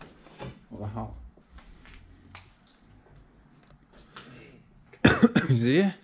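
A person's voice: a loud, short vocal outburst with no clear words about five seconds in, opening with sharp noisy bursts and then a voice bending in pitch, after a few seconds of faint, low sounds in a large empty room.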